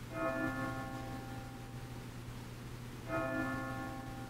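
A church bell tolling: two strokes about three seconds apart, each ringing on and slowly dying away. A steady low hum runs underneath.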